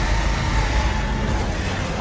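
A film-trailer sound mix: a heavy, steady low rumble as a giant horned monster erupts from desert sand, with faint music underneath.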